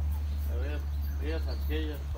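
Insects chirping in short repeated high-pitched bursts over a steady low hum, with a few brief voice sounds in the background.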